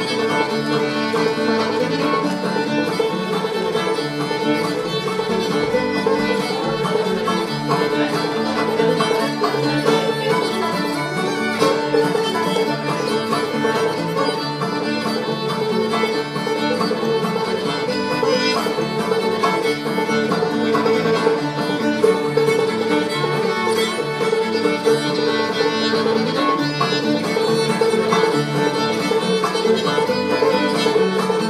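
Appalachian old-time string band playing an instrumental tune: fiddle leading over banjo and acoustic guitar, at a steady level throughout.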